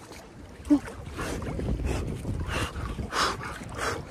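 Icy sea water sloshing and splashing around a swimmer's body as he moves through it, with wind on the microphone and a short gasp from the cold about a second in.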